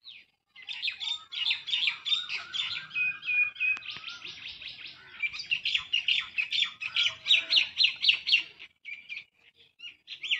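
Small birds chirping in fast, dense runs of short high calls, several voices overlapping, then falling quiet near the end.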